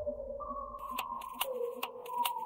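Electronic music played from a DJ set: a pure, whistle-like synth tone stepping between two pitches. Sharp, clicky percussion hits come in just before halfway, about two to three a second.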